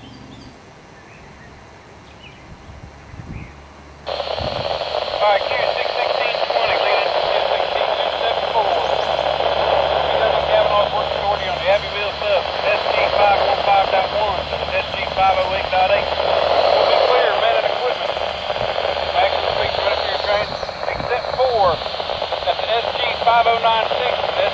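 Railroad scanner radio: about four seconds in, the squelch opens on a loud, hissy transmission with a voice breaking up in the static.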